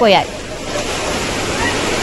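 Fast-flowing floodwater rushing steadily, after a voice trails off at the very start.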